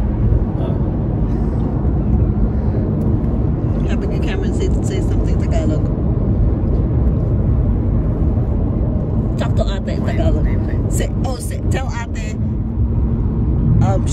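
Steady road and engine rumble inside a moving car's cabin, with voices talking briefly about 4 s and 10 s in.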